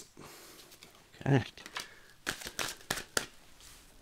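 A deck of tarot cards being shuffled by hand: a string of soft separate snaps and rustles of the cards in the second half. A short low vocal sound about a second in.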